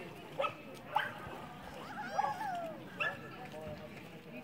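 A dog barking: three short, sharp barks, about half a second, one second and three seconds in, with a longer, drawn-out falling cry a little after two seconds.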